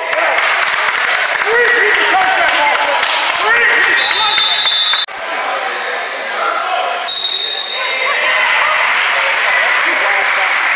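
A basketball game in a gym: a ball bouncing on the court and sneakers squeaking under crowd chatter. Two short, high, steady whistle blasts sound about four and seven seconds in, from the referee's whistle.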